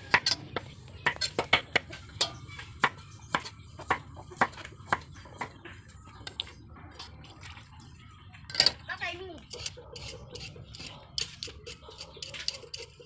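Cleaver chopping a carrot on a chopping board: a quick run of sharp knocks, two or three a second, for the first five seconds, then only a few scattered cuts.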